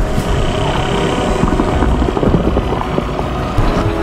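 Film soundtrack: a dense, steady low rumble with a held music score underneath.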